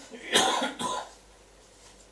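A man coughing twice in quick succession, about half a second apart, in the first second.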